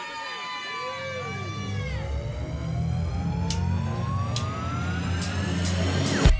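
Band's song intro: swooping, arching pitch glides from effects-laden electric guitar over a low sustained bass drone, then one long tone rising steadily in pitch as the build-up to the full band, with a few sharp high ticks along the way.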